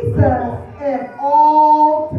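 A woman preacher's voice over the microphone in a sung, chanting delivery, ending on a long held note.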